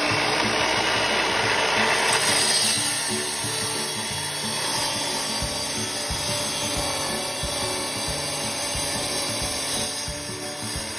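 Sliding-table tile saw running steadily, its blade grinding through a floor tile as the tile is pushed into the cut.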